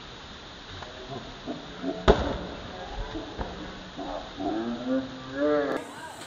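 A volleyball struck hard by hand, a sharp slap about two seconds in, then a lighter hit over a second later. Players shout and call out near the end.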